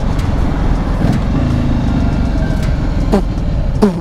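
Motorcycle engine running at low road speed under wind noise on the microphone; the engine note shifts about a second in and then holds steady.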